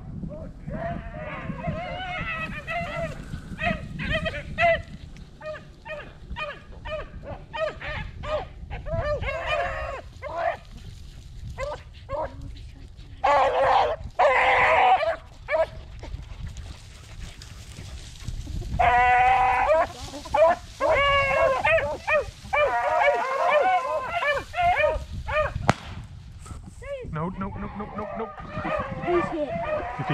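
A pack of beagles baying while running a cottontail rabbit's track, in full cry. The calls are a run of short chops and drawn-out bawls that come and go, loudest around the middle and again through the second half.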